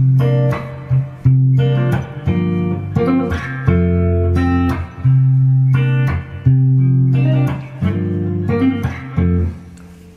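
Gibson Les Paul Standard electric guitar played fingerstyle. The thumb plucks bass notes and the middle finger picks chord tones through the song's ii–vi–V progression in B flat (C minor, G minor, F). The strings are struck percussively about once a second to keep the rhythm.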